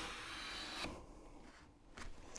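A hand plane cutting a shaving along the edge of a hardwood board, a quiet rasping that stops about a second in as the plane is lifted off mid-stroke.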